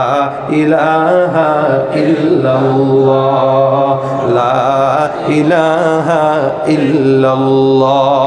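A man's voice chanting in long, wavering, ornamented phrases through a microphone and PA system: a preacher's sung delivery in a waz sermon.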